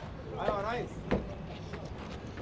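Outdoor crowd ambience: a person's voice speaking briefly, wavering in pitch, about half a second in, with a few sharp knocks, the loudest just after a second in.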